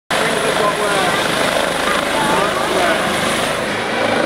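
Air ambulance helicopter's rotor and turbine running close by as it hovers low over a field, a loud steady noise, with people's voices talking over it.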